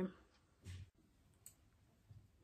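Quiet room tone with a brief soft handling noise, then a single short click about one and a half seconds in.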